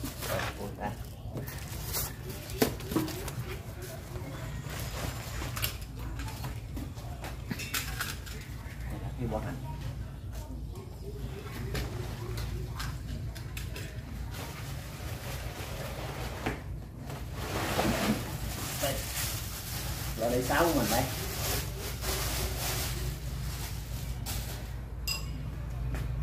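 Cardboard box and plastic wrapping rustling and crinkling as a loudspeaker cabinet is unpacked, with scattered short handling knocks over a steady low hum.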